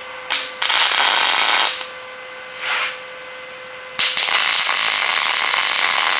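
MIG welding arc on quarter-inch steel plate, crackling in short runs: about a second of welding near the start, a brief spark-off in the middle, then a longer run of about three seconds from two-thirds of the way in. In the gaps there is a steady hum from the welding machine.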